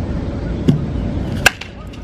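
Baseball bat hitting a pitched ball once, a sharp crack about one and a half seconds in, over a low rumble of wind noise, with a fainter click shortly before.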